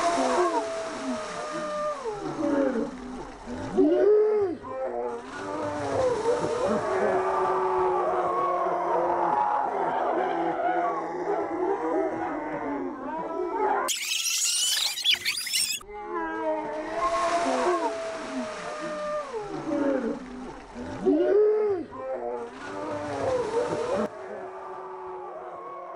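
Water pouring and splashing from buckets together with shouts and shrieks, played back slowed down so that the voices are drawn out into low, wavering moans. A short, sharper, higher-pitched burst comes about fourteen seconds in, and then the same slowed sequence plays again.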